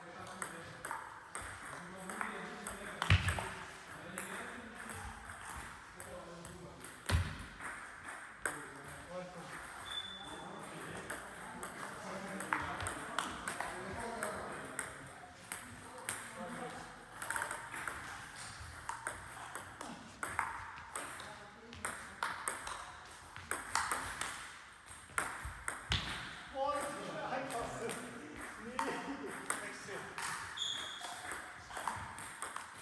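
A table tennis ball clicking back and forth in rallies, struck by bats, one of them faced with long-pimpled rubber, and bouncing on the table. It is a quick, uneven run of sharp ticks, with two louder knocks about three and seven seconds in.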